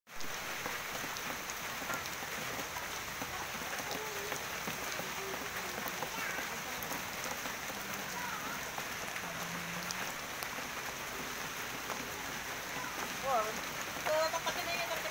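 Steady typhoon rain falling on roofs and wet surfaces.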